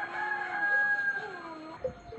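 A rooster crowing once: one long call held level for about a second, then falling away.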